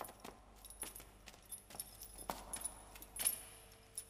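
Metal wrist chains jangling and clinking in irregular strokes as the shackled wearer walks, with one brighter clink near the end.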